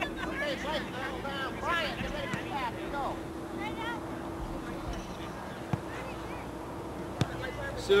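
Indistinct voices of the coach and boys talking on the field for the first few seconds, over a steady low hum. Two sharp clicks come in the second half.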